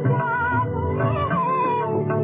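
Instrumental passage of an old Hindi film song: a melody instrument plays a wavering, bending line over tabla strokes with deep bayan bass notes. The recording sounds dull, with no top end.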